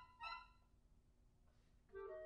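Clarinet ensemble playing two short, bright notes in quick succession, followed by a rest of about a second and a half before the ensemble comes back in at the end.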